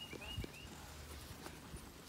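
Faint knocks and rustles from a handheld phone being moved and lowered, with a few soft thumps, the clearest about half a second in.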